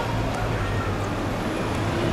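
Steady city background noise: a constant low traffic rumble with faint distant voices.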